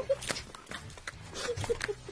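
Tortillas slapped against faces, a few sharp slaps, mixed with short bursts of muffled laughter.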